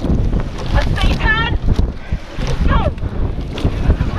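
Wind buffeting the microphone of a camera on the bow of a rowing shell under way, a dense irregular low rumble, with water rushing along the hull. A few brief voice-like calls sound faintly over it.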